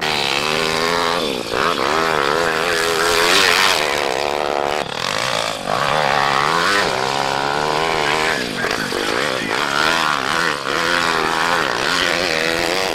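Coolster pit bike's small single-cylinder engine revving up and down repeatedly as it is ridden around a dirt track, over a steady rushing noise.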